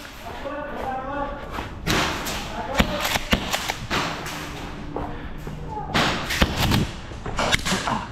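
Indistinct background voices with scattered sharp knocks and thuds, a few of them louder, around three seconds in and again around six seconds in.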